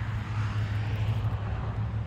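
A steady low engine hum with a wash of outdoor background noise, the hum fading near the end.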